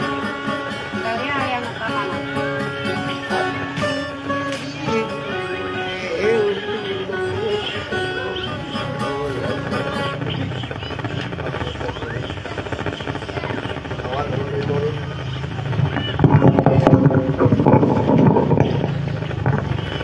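Acoustic guitar accompanying a woman singing in dayunday style, her voice rising and falling over the guitar through the first half. The sound grows louder and denser a few seconds before the end.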